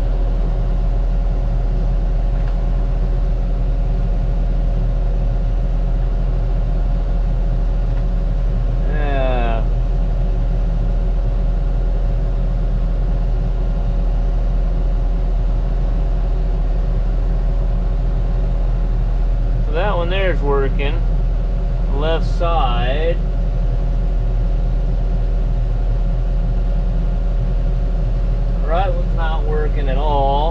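New Holland tractor's diesel engine running steadily, heard from inside the cab as a loud, even low drone.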